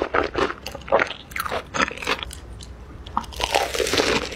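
Crisp crunching bites and chewing of a Korean potato corn dog, its fried potato-cube crust cracking between the teeth. The crunches come thick for about two seconds, ease off briefly, then start again near the end.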